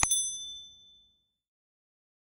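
A short click, then a bright synthetic bell ding that rings out and fades away within about a second and a half. It is a notification-bell sound effect marking notifications being switched on.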